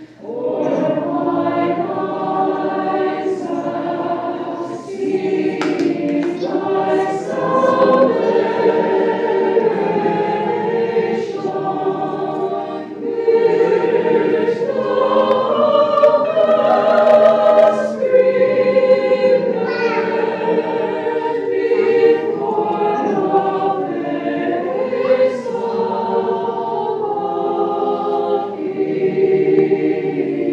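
Orthodox monastic choir chanting unaccompanied in several voices, with long held notes. The chant picks up again after a short break at the very start.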